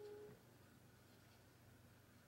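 Near silence: room tone with a faint low steady hum. A short steady tone ends about a third of a second in.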